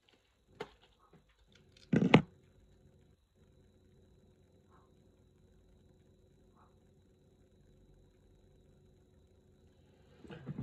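A tarantula enclosure being opened by hand: a small click, then a short clattering knock about two seconds in, followed by faint room tone.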